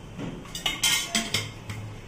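A few sharp metallic clinks and knocks from a metal frying pan and kitchenware, bunched between about half a second and a second and a quarter in, while cooking oil is poured into the pan. A low steady hum follows.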